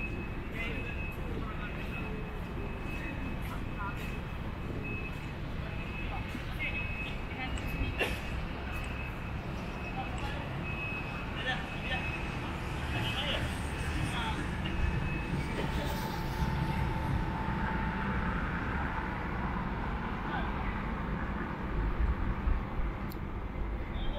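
Outdoor city ambience: a steady low rumble of road traffic with faint voices, and a thin, high steady tone that comes and goes through the first part.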